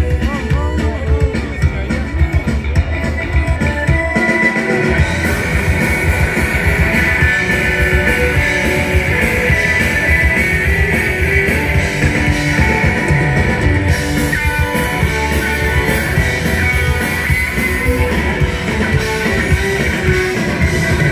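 Live rock band playing an instrumental passage on electric guitars, bass and drum kit through a festival PA, heard from within the audience. The deepest bass drops out briefly about four seconds in.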